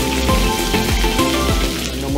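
Background music with a beat over a high crackling sizzle of beef and red onion stir-frying in a very hot wok; the sizzle fades near the end.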